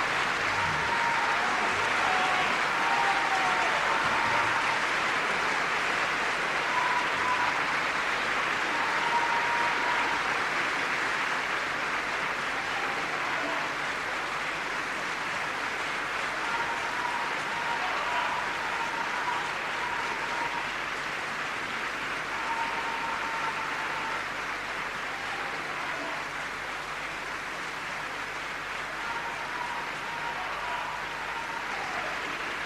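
A large theatre audience applauding steadily, greeting the tenor soloist as he comes on stage. The applause eases slightly toward the end.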